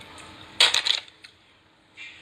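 A brief, loud clatter of several quick clicks about half a second in, lasting about half a second.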